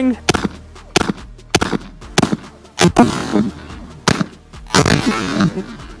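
Maverick 88 pump-action shotgun firing magnetic buckshot: a series of sharp reports spread over several seconds, some trailing off in a short echo.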